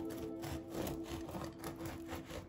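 Serrated bread knife sawing through a crusty seeded bread roll on a wooden cutting board, in repeated short strokes, with background music underneath.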